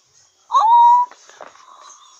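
A girl's high-pitched squeal of surprise, an 'oooh' that slides up fast and is held for about half a second before breaking off.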